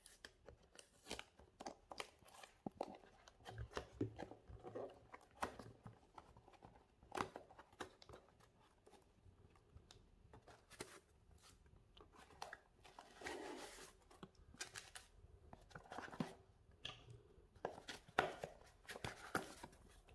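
Faint, scattered clicks, scrapes and rustles of a cardboard box being unboxed by hand: a seal sticker peeled off, the flaps opened and a foam pad lifted out.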